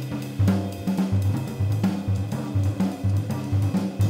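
Up-tempo jazz: a drum kit keeping time on cymbals and snare over a walking bass line moving about three notes a second.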